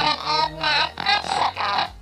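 People laughing in a run of about half a dozen short bursts.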